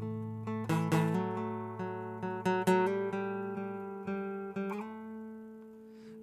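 Solo acoustic guitar playing an instrumental passage of plucked notes and chords that ring over a held low note, the sound dying away toward the end.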